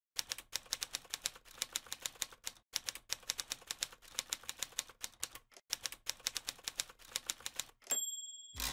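Typewriter keystrokes, a quick run of sharp clacks about six to eight a second with short pauses between runs, as a quote is typed out; a typewriter bell dings right at the end.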